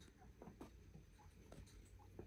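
Near silence in a small room, broken by a few faint, scattered clicks and scratches of chinchillas moving about on a carpeted floor strewn with wooden sticks.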